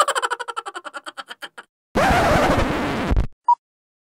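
Old-film countdown leader sound effect: a fast train of projector-like clicks that fades out over the first second and a half, a loud burst of static for about a second, then one short beep.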